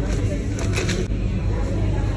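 Steady low rumble of background noise, with a few short rustles about half a second to a second in from a small cardboard box of rice being handled.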